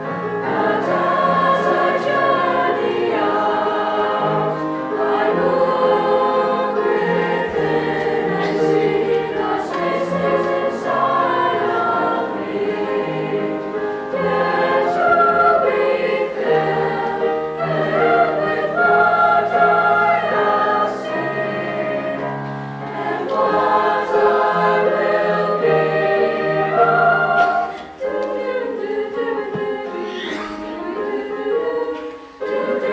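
A school choir of boys and girls singing together in held, shifting chords, with a short break about two seconds before the end.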